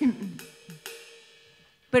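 A few light cymbal taps on a drum kit, each ringing briefly and dying away, with a faint steady hum under them.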